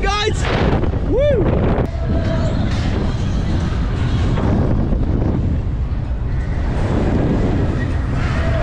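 Wind rushing over a ride-mounted camera microphone as a KMG Speed Booster thrill ride swings its riders through the air. A rider gives an excited whoop right at the start and a rising-and-falling yell about a second in.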